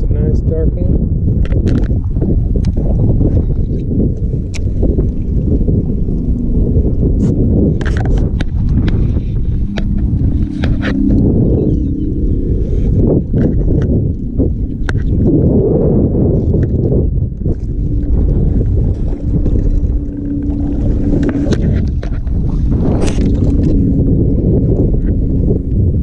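Strong wind buffeting the microphone: a loud, continuous low rumble, broken by scattered short clicks and knocks.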